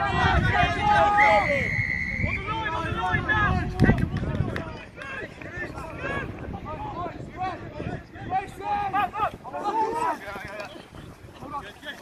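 A rugby referee's whistle, one steady blast about a second in that is held for about a second, over distant shouting from players and spectators on the pitch. Wind buffets the microphone through the first few seconds.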